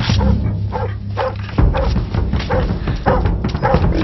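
Dogs barking over and over, about twice a second, over background music.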